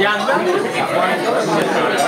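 Several people talking over one another at a table: overlapping conversation chatter.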